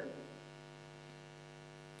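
Faint, steady electrical hum on a phone-in line, one even buzzing tone with many overtones, heard in a gap in the caller's speech.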